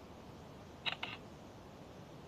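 Two quick, sharp clicks about a second in, a fifth of a second apart, over a steady faint hiss.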